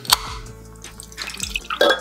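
Ring-pull on a small aluminium can of Wangzai milk snapping open with one sharp crack, then milk pouring into a glass mug, over background music with a steady beat.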